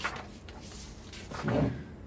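Paper workbook page being turned by hand, a short rustle and flap of the sheet about one and a half seconds in.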